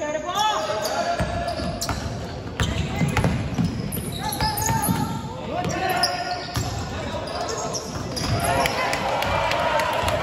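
A basketball being dribbled, bouncing repeatedly on a hardwood gym floor, with voices calling out across the gym.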